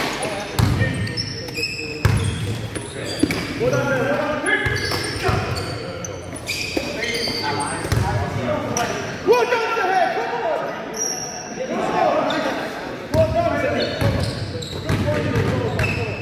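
Basketball bouncing on a sports-hall floor, with players' voices and shouts echoing through the hall.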